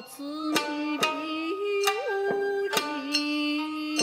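Japanese min'yō folk music: a shamisen plucked in sharp strokes about twice a second under a woman singing long held notes.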